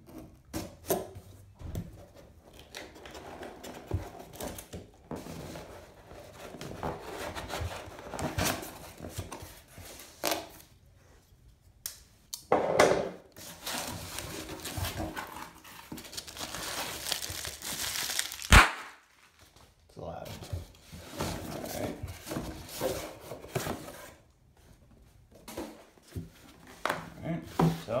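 A cardboard shipping box being cut open with a folding knife and unpacked: tape and cardboard tearing, paper packing crinkling and rustling, with scattered knocks. One sharp, loud knock comes about two-thirds of the way through.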